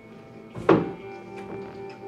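A single heavy thud about two thirds of a second in, then music with long held notes.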